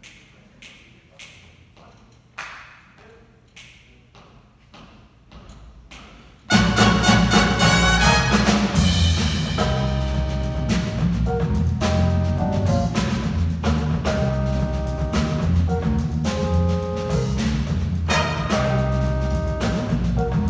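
A few faint clicks, then about six seconds in a jazz big band comes in loudly all at once: brass chords over bass and drums.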